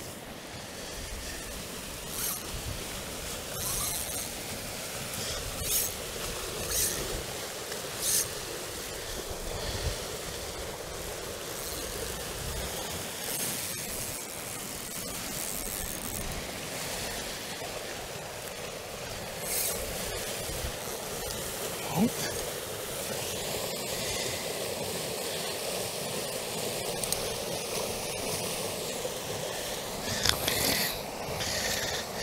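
Rushing water in a fast-flowing irrigation wasteway: a steady, even rush, with scattered short clicks and rustles over it.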